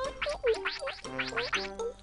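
Cartoon sound effect: a quick run of about eight rising, whistle-like chirps, one after another, over light background music.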